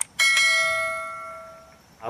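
A click followed by a bell-like notification chime sound effect, struck once. Its several steady tones ring out and fade away over about a second and a half.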